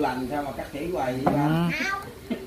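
A person's voice making drawn-out vocal sounds with no clear words, bending in pitch and rising near the end.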